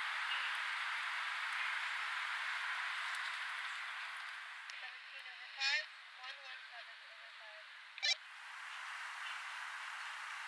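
Steady outdoor hiss that eases off partway through, with a faint distant voice in the second half and two short, sharp, high sounds about 6 and 8 seconds in.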